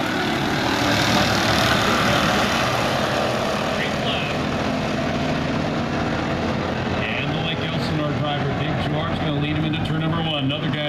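A pack of street stock race cars on a dirt oval, engines running hard together at the start of a heat race. The noise is loudest about one to two seconds in as the field passes close, then continues steadily as the cars move away around the track.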